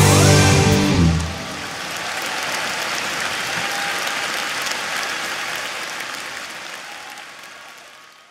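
A band's final chord ends about a second in, followed by audience applause that swells, then fades out.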